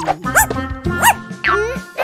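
Cartoon puppy giving a few short, high yips over bouncy children's background music.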